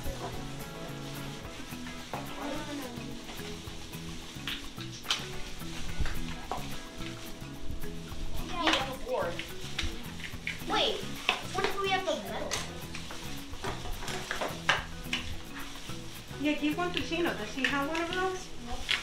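Background music, with crackling, clicking and rustling over it as cooked lobster shells are cracked and picked apart by hands in crinkling plastic gloves. Children's voices come in briefly now and then.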